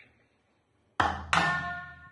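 About a second in, a heavy impact, then a second strike that rings with several metallic tones, fading away slowly.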